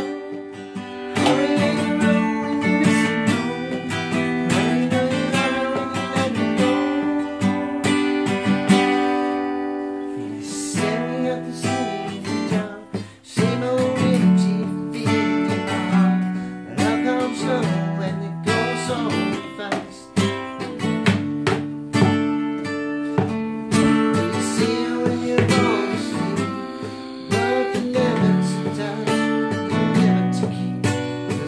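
Acoustic guitar strummed in a run of chords.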